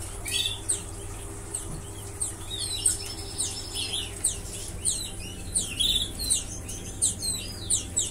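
Many caged canaries chirping, with short, quick, high calls overlapping throughout and one held high note about three seconds in. A low steady hum runs underneath.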